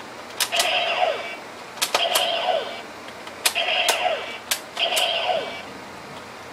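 Bandai DX Decadriver toy belt: its plastic side handles click as they are worked, and each time the belt plays a short electronic sound effect that drops in pitch at its end, four times.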